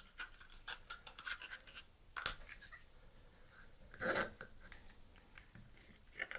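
Faint clicks and light scraping of tap splitter sleeves being picked up and handled. There is a sharper click about two seconds in and a louder short knock about four seconds in.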